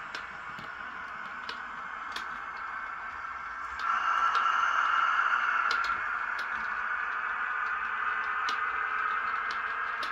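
Model InterCity 125 (HST) train running along the layout's track: a steady high whine that grows louder for about two seconds just before the middle, with scattered clicks of the wheels over the rail joints.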